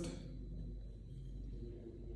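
Quiet room tone with a steady low hum and no distinct clicks or knocks.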